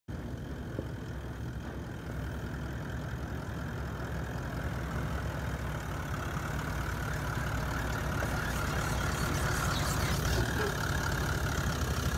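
Toyota Land Cruiser VDJ79's 4.5-litre V8 turbo-diesel running at low revs as it crawls slowly off-road, a steady low rumble that grows gradually louder as the truck draws closer.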